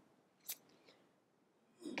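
Near silence of a small room, broken by one brief, sharp click about half a second in, and a faint breath just before speech resumes at the end.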